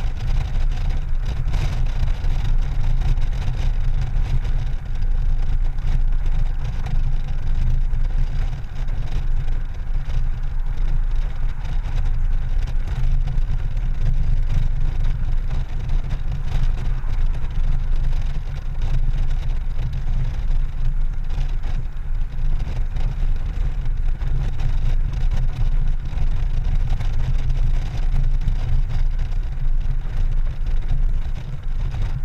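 Honda Gold Wing GL1800 motorcycle cruising at a steady speed: a continuous low rumble of engine, road and wind noise, with the loudness wavering slightly throughout.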